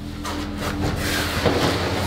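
Rustling and rubbing noise as carried camping gear and the handheld camera brush close against a concrete wall, growing louder about halfway through. A faint steady low hum runs underneath.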